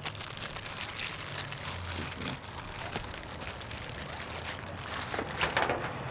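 Clear plastic packaging bag crinkling in irregular crackles as it is handled and pulled off a product.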